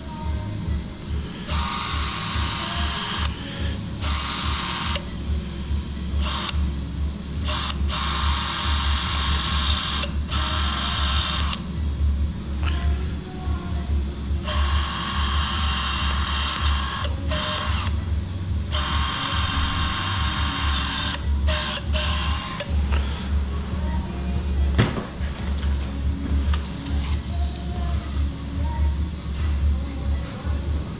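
Synthes Colibri battery-powered surgical drill running a 2 mm bit into a dog's toe bone to make a screw hole. It runs in repeated bursts of one to three seconds with short stops between them, over a steady low pulsing hum.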